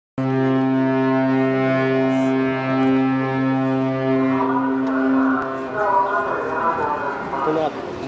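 A ship's horn sounds one long, steady, low blast of about four seconds that starts abruptly and cuts off, followed by people's voices.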